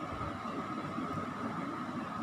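Steady background room noise: an even hiss with a faint constant high whine, and no distinct events.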